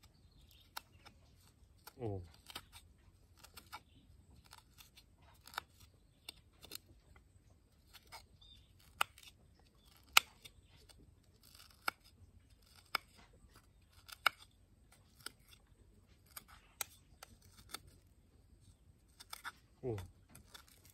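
Metal spoon clinking and scraping against a small ceramic bowl as chili salt is mashed in it: irregular sharp clicks, about one or two a second.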